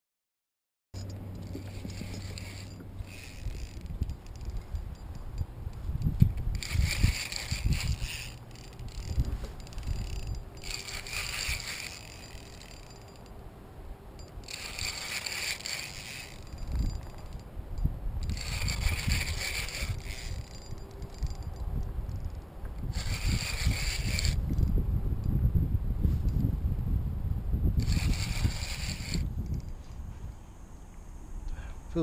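Spinning fishing reel buzzing in bursts of about a second, roughly every four seconds, while a hooked fish is fought on the line. A low wind rumble on the microphone runs underneath.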